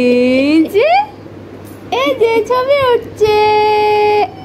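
A high, sing-song voice vocalising to or from a baby, its pitch gliding up and down in short phrases, then holding one long steady note near the end.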